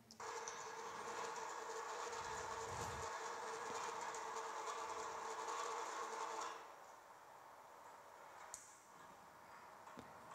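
Toroidal transformer winding machine running with a steady hum, heard as video playback through lecture-hall speakers. It cuts off about two-thirds of the way through, followed by one faint click.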